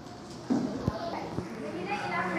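Voices talking, starting about a quarter of the way in, with two short knocks among them.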